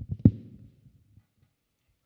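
Handling noise from a live microphone being set into its stand clip: one sharp, loud thump about a quarter of a second in, among a few softer knocks.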